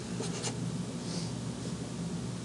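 Felt-tip marker writing on paper: a few short, faint strokes as letters are drawn.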